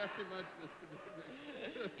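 A man talking, his words unclear.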